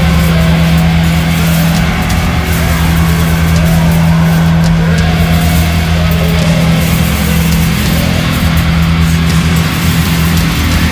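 Raw black metal: a dense wall of heavily distorted guitar holding a low note over drums, loud and unbroken.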